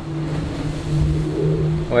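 Steady low hum aboard the Sodebo Ultim 3 racing trimaran, with a low note and a second note about twice as high, growing a little louder about a second in.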